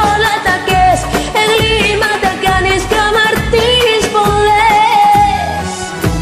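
A woman singing a Bulgarian pop song in Bulgarian over a karaoke backing track, holding long, wavering notes.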